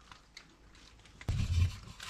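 A few faint ticks, then about a second and a quarter in a low rubbing scrape lasting about half a second as a wooden mounting board is shifted against the carpeted wall of an RV's water-pump compartment.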